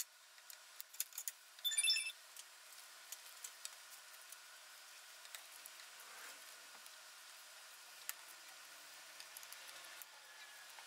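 Small four-inch curved scissors snipping fabric close to the stitching, heard as faint scattered snips and clicks, with a brief louder metallic jingle about two seconds in.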